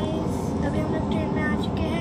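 Steady low rumble inside an Indian Railways passenger coach, under a girl's voice.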